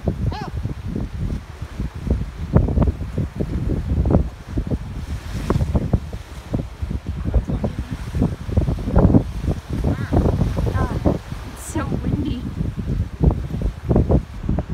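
Strong wind buffeting the microphone in uneven gusts, with the sea washing against the rocky shore beneath it.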